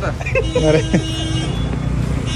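Street traffic: a steady low rumble of vehicle engines, with a vehicle horn sounding for a second or so around the middle, and people's voices close by.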